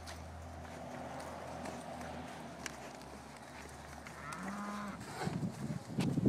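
One of the cattle gives a single short moo about four and a half seconds in. Near the end a louder, irregular scuffling noise starts as the cattle crowd close.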